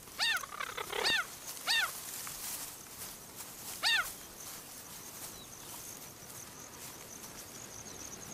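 A cheetah giving short, high-pitched chirping calls, four of them, each rising and falling in pitch. They come from a pregnant female warding off courting males.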